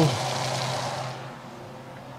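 Cornmeal-dredged fish fillet sizzling in hot avocado oil and butter in a cast-iron skillet, the sizzle fading out about a second in.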